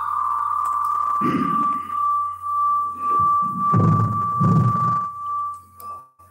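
A steady high-pitched whistle held on one pitch, the ringing of audio feedback in an online video call, with muffled low sounds under it about a second in and again near the end.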